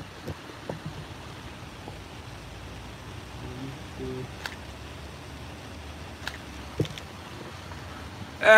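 Steady background noise of a city street, with a few short, sharp clicks in the second half.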